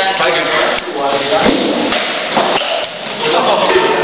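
Voices talking in a large, echoing hall, with a few sharp knocks of practice weapons striking shields or armour in armoured sparring.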